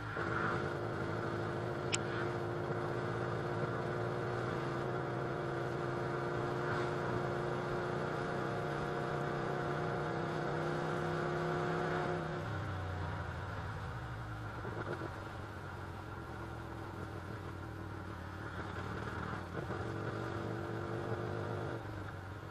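A Benelli Leoncino 250's single-cylinder engine running steadily at road speed under road and wind noise. About halfway through, the engine note falls and gets a little quieter.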